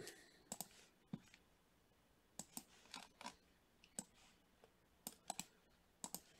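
Faint, scattered clicks of a computer mouse and keyboard, about a dozen, some in quick pairs, against near silence.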